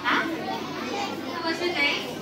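A large group of schoolchildren talking and calling out over one another, with a high rising shout right at the start, echoing in a large hall.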